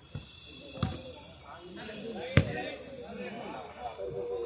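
Two sharp thuds of a football being kicked on an artificial-turf pitch, about a second in and again, louder, past the two-second mark.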